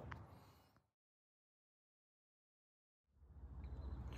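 Near silence: the sound fades out to about two seconds of dead silence, then a low steady hum fades in near the end.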